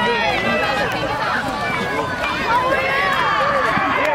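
Football crowd and sideline voices shouting and cheering over one another as a play runs, many voices overlapping with no single speaker standing out.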